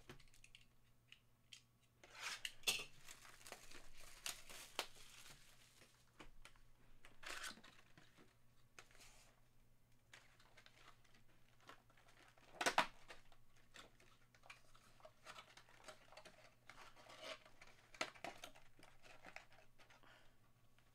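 Faint tearing and crinkling of the plastic wrap as a trading-card hobby box is opened, with the cardboard box being handled. The rustles come in scattered bursts, the loudest a sharp tear a little past halfway.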